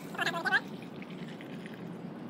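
Turmeric-and-cinnamon water poured from plastic cups into a plastic tub: a steady pouring splash, with a brief high, wavering tone near the start.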